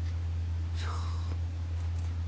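A pause in a man's talk: a steady low hum, with one faint breathy sound about a second in.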